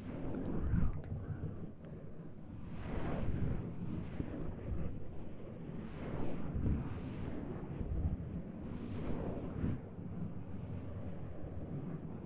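Hands rubbing and massaging the silicone ears of a 3Dio binaural microphone, heard as a close, muffled rumbling swish that swells and fades with each stroke every second or two.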